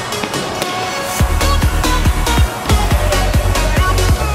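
Electronic background music with a steady beat; a heavy bass line comes in about a second in.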